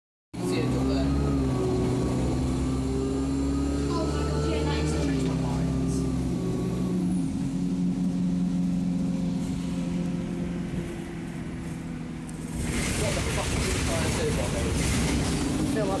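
Inside an Alexander Dennis Enviro200 single-deck bus under way: the diesel engine drones under load, stepping in pitch as the automatic gearbox shifts, then eases off about seven seconds in. It goes quieter for a couple of seconds, then picks up again with a hiss about three quarters of the way through.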